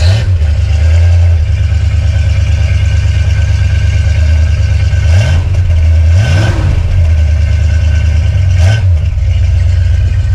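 1966 Plymouth Barracuda Formula S's 273 Commando four-barrel V8 idling through its single exhaust with a small resonator, with three short throttle blips in the second half.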